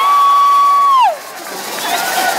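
Crowd answering the speaker's call, led by one long high-pitched shout that is held steady and then falls away about a second in. Crowd noise follows.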